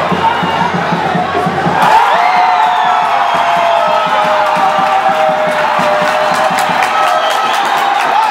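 Football stadium crowd cheering and shouting, swelling into a louder roar about two seconds in as a penalty kick in a shootout is taken, with long held notes sounding over the noise.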